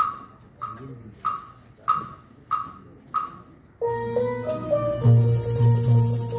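Six even clicks counting in, then a steel pan starts playing a tune about four seconds in, joined about a second later by shaken maracas over a low pulsing beat.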